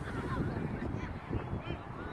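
Wind buffeting the microphone, with several short, high-pitched distant calls or shouts over it.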